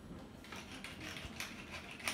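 Wooden pepper mill being twisted, grinding peppercorns with a run of quick ratcheting clicks that starts about half a second in.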